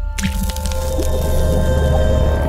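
Logo intro sound effect: a wet splat about a fifth of a second in, as a drop of ink lands and spreads, over a sustained music chord.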